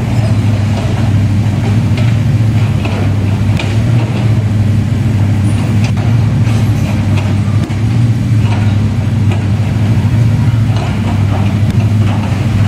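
Cat 6090 hydraulic mining excavator running under load as it digs and loads, its engine giving a loud, steady low drone.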